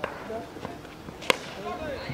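Three sharp knocks, about two-thirds of a second apart, the last the loudest, over faint distant voices.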